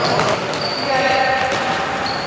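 Indoor futsal game sound in a sports hall: voices calling out over a steady hall din, with the ball thudding on the court floor.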